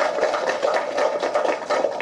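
Audience applauding: many hands clapping in quick, irregular claps.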